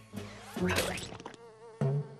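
Cartoon insect-like buzzing sound effect from a swarm of small jungle creatures, with a louder rush about half a second in and a wavering buzz after it.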